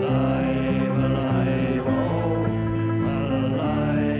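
Solo resonator banjo playing a slow tune in long held notes.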